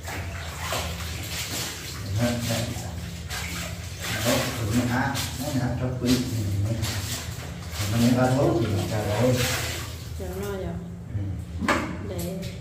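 Clothes being hand-washed in a plastic tub of water, with sloshing and splashing, under a person's voice talking through most of it.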